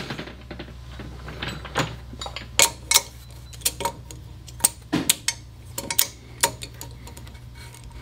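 Irregular light metal clicks and clinks as steel tooling is handled and set down at a valve-seat cutting machine, over a steady low hum.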